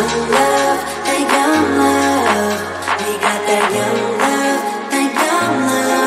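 Pop/R&B background music with a steady beat and a deep bass line.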